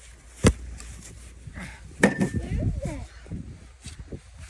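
A sharp knock about half a second in and a second knock about two seconds in.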